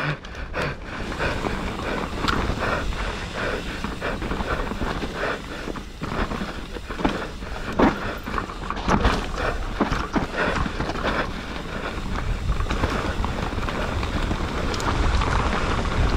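Mountain bike ridden fast down a dirt forest trail: tyres running over dirt and leaves, with many short clicks and knocks from the bike rattling over bumps, and wind rumbling on the helmet or bike camera's microphone.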